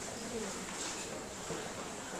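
Faint, indistinct low voices murmuring in a hall, with no clear words.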